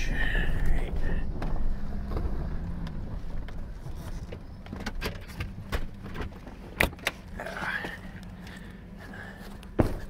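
Pickup truck engine running slowly as the truck pulls up, its rumble fading away. This is followed by scattered clicks and knocks of the truck door being worked as the driver gets out, with a sharp knock near the end.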